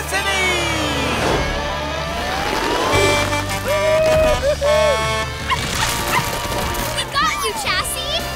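Cartoon soundtrack: background score music with sliding, swooping sound effects and brief wordless voice sounds.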